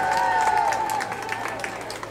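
Spectators giving scattered applause and cheers for a rider just introduced, while the PA announcer's drawn-out call trails off.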